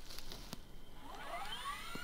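Faint outdoor hush with a few light clicks, then from about halfway a rising, whistle-like tone sweeping upward and levelling off high: an editing transition sound effect.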